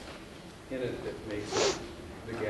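Faint speech from a person off the microphone, with a short hiss about one and a half seconds in that is the loudest sound.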